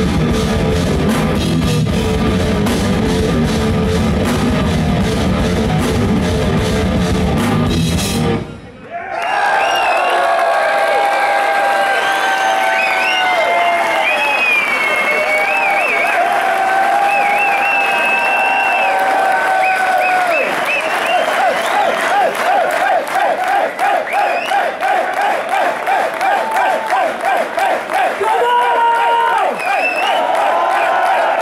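Heavy metal band playing live, with distorted guitar, bass and drums, stopping about eight seconds in. After that the audience sings a melody together without the band, the singing pulsing rhythmically over the last third.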